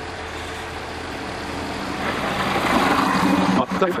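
Waldbahn Regio-Shuttle diesel railcar approaching and pulling in alongside, its engine drone growing louder from about halfway through.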